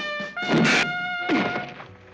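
Cartoon soundtrack of held brass notes, cut into about half a second in by a loud thunk sound effect and a second hit with a sliding pitch just over a second in, after which the music drops back quieter.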